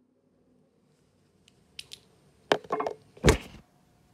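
Handling of small coral-fragging hand tools: a few light clicks, then a sharp knock about two and a half seconds in, a brief rattle, and a louder knock near the end, as a protective tip is worked off a tool.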